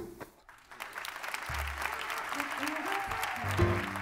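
Audience applause swelling, while live music begins under it: a low bass note about a second and a half in, a short melodic line, then the band coming in fully near the end.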